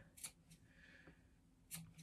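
Fabric scissors snipping into fabric up to a stitching line: two faint, short snips about a second and a half apart.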